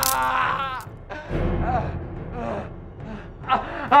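A man crying out in pain as a tooth is pulled with dental forceps: a strained cry that falls away about a second in, then quieter groans and gasping breaths, over background music.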